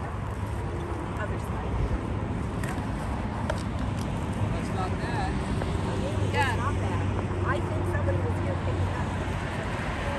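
Highway traffic going by, a steady road rumble with a passing vehicle's engine hum growing louder past the middle, with faint voices nearby.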